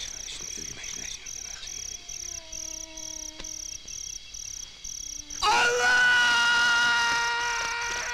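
Insects, crickets or cicadas, chirping in a steady rhythm of about three chirps a second. About five and a half seconds in, a loud, long held note with many overtones sets in and slowly fades.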